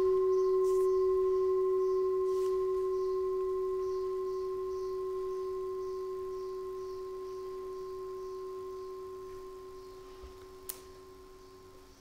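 Singing bowl ringing on after a single strike: one steady low tone with fainter higher overtones, slowly fading away. A faint click near the end.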